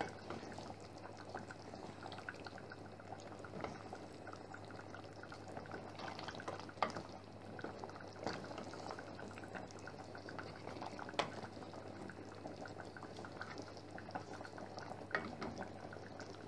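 Coconut-milk chili sauce simmering in a steel pot with a soft, steady bubbling and popping as it reduces over low heat and thickens. A wooden spoon stirring in the pot gives a few sharper clicks.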